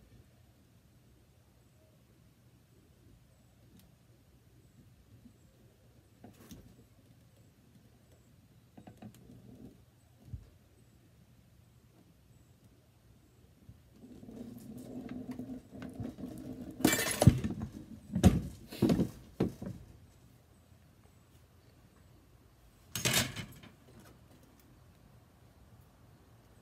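Hand-lever bench shear cutting thin copper sheet: after a few light clicks, a grinding creak starts about halfway as the blade bites, then a run of loud crackling snaps as it shears through the metal, and one more sharp crack a few seconds later.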